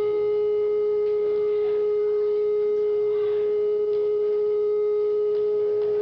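A single steady, unwavering pitched tone held for several seconds, with faint overtones above it.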